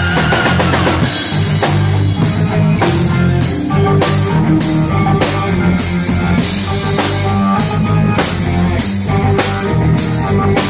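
Live amplified rock band playing: a steady drum-kit beat, about two to three hits a second, under bass guitar and keyboards. A held sung note ends just after the start.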